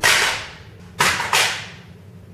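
Three sharp pistol-shot cracks: one at the start, then two close together about a second in, each dying away within half a second.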